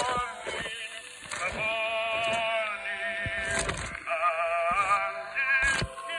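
Early 1900s acoustic phonograph recording of a male tenor holding notes with a wide vibrato, with occasional surface clicks from the old record.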